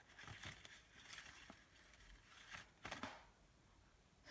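Faint rustling and soft crinkles of a small folded slip of paper being drawn and unfolded by hand, in otherwise near silence.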